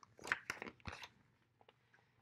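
Paper pages of a picture book being turned and handled: a few short, faint crackles in the first second, then quiet.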